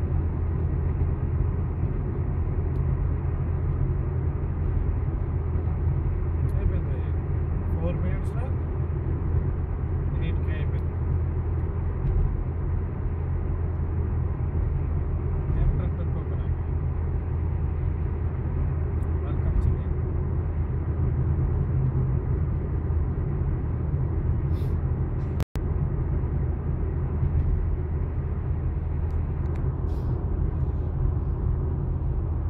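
Steady low rumble of a car's engine and tyres, heard from inside the cabin while cruising at speed. The sound cuts out for an instant about 25 seconds in.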